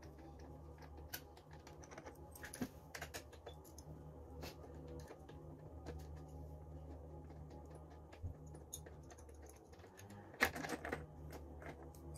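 Faint, scattered light clicks and taps of loosened bolts being taken out by hand and of the plastic side panel and seat of a Honda CRF300L being handled, with a louder cluster of clicks near the end, over a steady low hum.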